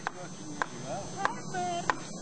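Mallet and chisel carving wood: four sharp knocks, evenly spaced about two-thirds of a second apart.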